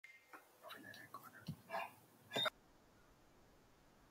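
Faint, quiet speech, close to whispering, for about the first two and a half seconds, then near silence.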